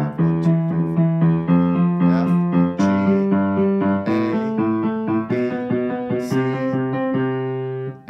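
Piano, left hand alone playing broken octaves in repeating groups of five notes, shifting up one white key at a time so the figure climbs step by step.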